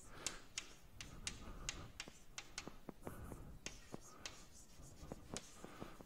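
Chalk writing on a blackboard: faint, irregular taps and short scratches of the chalk, about three a second.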